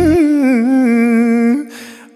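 Male singer holding a long note with vibrato. The backing music drops out just after the start and leaves the voice alone. The note fades out about a second and a half in, followed by a soft hiss.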